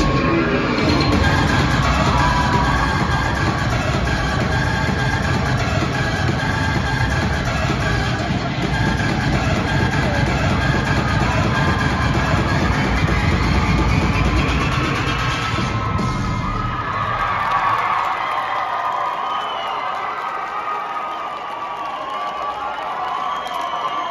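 Pom dance routine music with a heavy beat, played over arena loudspeakers, with spectators cheering and yelling. The music stops about sixteen seconds in and the crowd keeps cheering for the finished routine.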